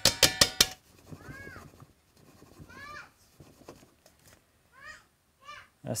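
A quick run of rattling knocks as the resin-filled vacuum chamber is shaken to dislodge trapped air bubbles from the soaking wood blanks, followed by four short, high, rising-and-falling animal calls spread over the next few seconds.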